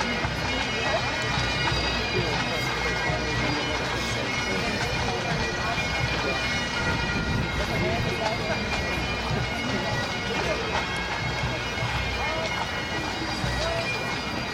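A pipe band's Great Highland bagpipes sounding together, the drones holding one steady chord.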